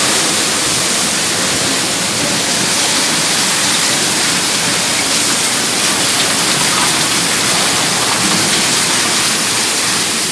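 Coal pouring out of a railway hopper wagon's open bottom-discharge doors into a track hopper, a loud, steady rush.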